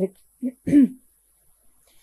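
A woman's short wordless vocal sound, such as a throat clear or hesitation noise, lasting under half a second, about half a second in.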